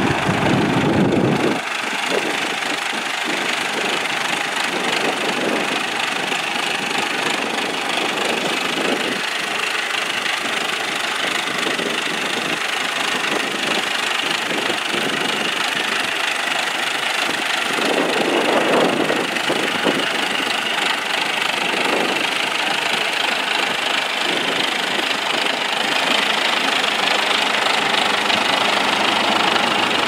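Vintage Fordson tractor's engine running steadily under load as it pulls a plough through the ground, with a brief louder surge about eighteen seconds in.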